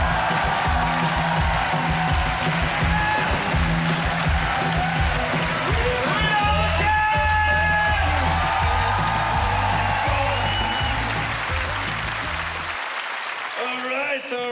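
Audience applause in a theatre over walk-on music with a pulsing bass beat; the music cuts off about a second before the end, leaving the applause.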